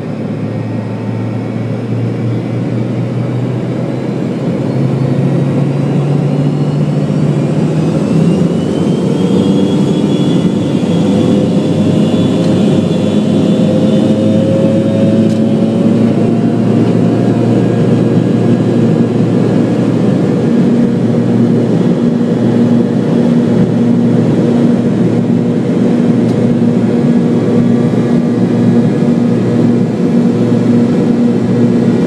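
McDonnell Douglas MD-80's two rear-mounted Pratt & Whitney JT8D turbofans spooling up to takeoff thrust, heard inside the passenger cabin. Rising whining tones climb and the sound grows louder over roughly the first dozen seconds, then the engine noise holds steady and loud as the jet accelerates down the runway.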